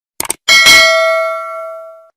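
Sound effects of a subscribe-button animation: a quick double click, then a notification bell struck once, ringing and fading away over about a second and a half.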